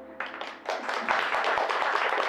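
Small audience applauding at the end of a song, starting just as the last held note of the music dies away and swelling into full clapping a little over half a second in.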